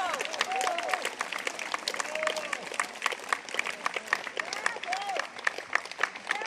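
Audience applauding: many hands clapping, a dense stream of claps.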